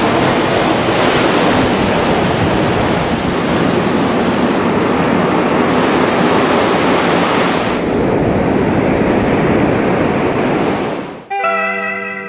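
Ocean surf breaking on a beach, a loud, even wash of waves. It cuts off suddenly near the end, where guitar music starts.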